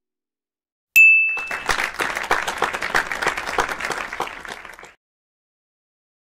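A single bright ding, followed straight away by a few seconds of applause and clapping that cuts off abruptly: stock sound effects.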